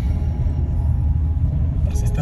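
Steady low rumble inside a moving car's cabin: engine and road noise while driving.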